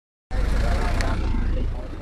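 Roadside street noise: a loud, deep vehicle rumble with voices mixed in, starting suddenly just after the start and dying down shortly before the end.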